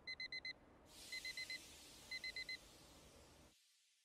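Digital alarm clock beeping: three bursts of four quick, high beeps, about a second apart, over faint room hiss.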